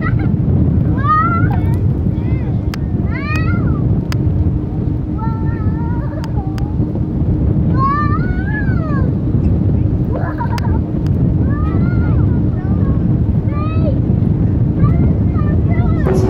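Gulls calling again and again, short rising-and-falling cries, over the steady low drone of the tour boat's engine and wind.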